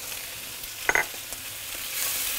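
Cherry tomatoes, olives and capers sizzling in olive oil in a sauté pan, stirred with a wooden spoon, with a steady hiss and one short sharp sound about a second in.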